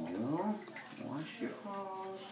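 Water sloshing as hands wash a small wet dog in a bathtub, under a voice making wordless sounds that rise and fall, with a short held note near the end.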